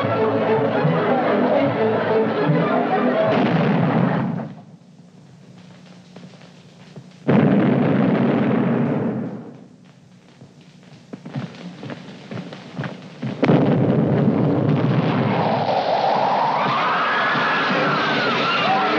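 Film-soundtrack orchestral dance music is cut off about three seconds in by a sudden cannon boom. A second, heavier boom comes about seven seconds in and dies away, and a third loud burst about thirteen seconds in runs on as sustained noise, with a wavering cry rising and falling near the end.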